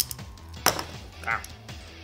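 Sharp clicks of a plastic Bakugan toy ball being handled, two of them about two-thirds of a second apart, over steady background music. A short spoken "Ah" comes just past the middle.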